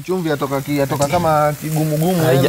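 Njahi beans sizzling in a thick sauce in a pan, a steady hiss beneath a person's voice, which is louder.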